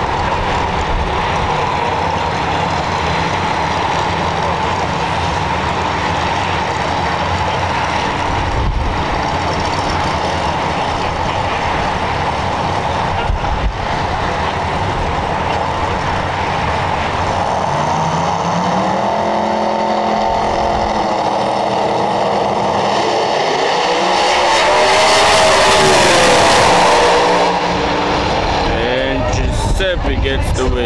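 Drag race car engines running loud at the strip. Their pitch climbs in the last third, is loudest a few seconds before the end, then falls away.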